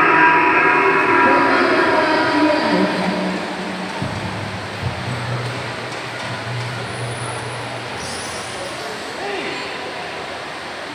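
A loud, steady, horn-like droning tone with several pitches sounding at once. It fades and drops to a lower pitch about three to four seconds in, and carries on more weakly until about eight seconds in.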